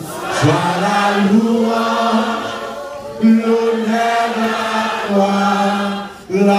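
A man singing a slow, chant-like worship song into a microphone, holding long, steady notes, with a short break about three seconds in.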